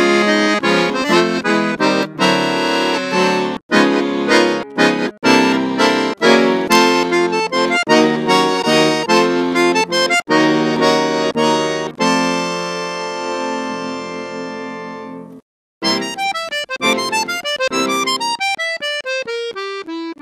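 Accordion playing a concert waltz: quick chords and runs, then a long held chord that slowly fades out, a brief pause, and a fast descending run of notes.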